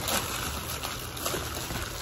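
Clear plastic wrapping and bubble wrap rustling steadily as it is handled and pulled open.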